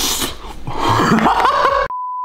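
A man's wordless vocal reaction, a groan-like sound with bending pitch, while eating. Just before the end it cuts off abruptly to a steady test-tone beep, the tone of a colour-bars test signal.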